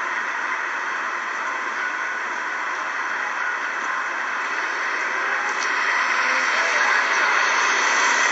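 Steady rushing noise of outdoor street sound, traffic and wind, played back through a laptop's small speakers, so there is no low end.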